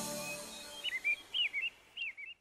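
The final chord of a children's song fades out. About a second in, a run of high, quick bird chirps follows: short tweets that slide up and down, in two or three small groups.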